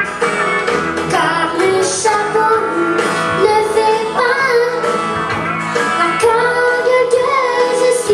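A young girl singing a French-language country song into a microphone over instrumental accompaniment.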